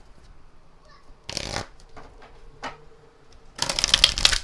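Oracle card deck being handled and shuffled by hand: a short rustle of cards about a second in, a faint tap, then a quick burst of shuffling near the end.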